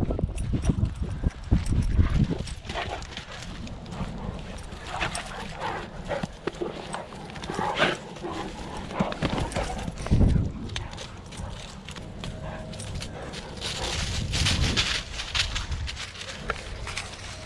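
Two Great Danes play-wrestling on grass: scuffling, heavy paw thuds, and their grunts and breathing close by, with irregular low thumps about two seconds in and again at ten seconds.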